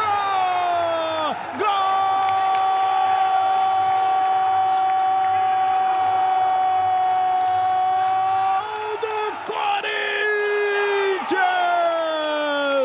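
A TV commentator's drawn-out 'Goooool!' shout for a goal, sung out on one long held note of about seven seconds after a short first cry. He follows it with more cries that slide down in pitch near the end.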